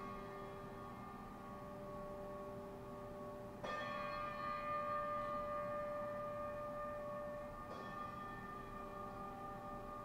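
Slow bell tolling, with a stroke about every four seconds. The strokes alternate between a lower and a higher note, and each one rings on until the next is struck.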